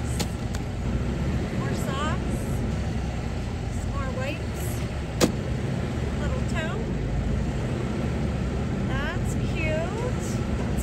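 Car engine idling steadily, with short rising squeaks recurring every two seconds or so and one sharp knock about five seconds in.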